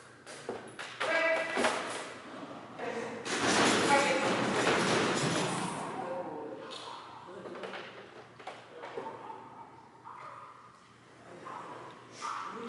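A dog agility run: short voice calls to the dog about a second in, scattered thuds and knocks from the dog and the equipment, and a loud noisy rush from about three to six seconds in.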